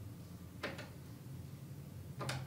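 A single soft click about two-thirds of a second in, against a faint steady low hum.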